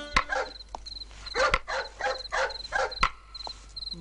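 A dog barking repeatedly in short bursts, over a faint, even, high-pitched chirping of insects. A few sharp taps sound about a second apart.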